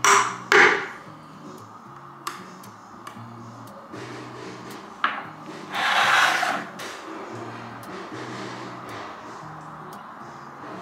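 Metal lid of a tin of Johnstone's cupboard paint being worked loose and pried off, giving a few sharp clicks and knocks on the tin and a short scraping rush about six seconds in, over steady background music.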